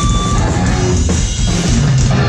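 Live rock band playing loud, with a full drum kit and electric guitar.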